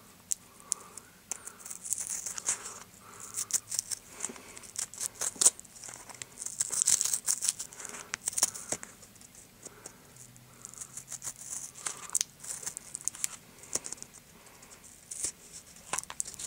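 Tearing and crinkling of the seal being peeled off a new, unopened Copenhagen snuff can close to the microphone, in irregular bursts with small clicks and rattles.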